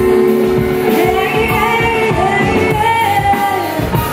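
A woman singing into a microphone with a live band: drum kit and keyboard. Her voice comes in about a second in with long, held notes over a steady drum beat.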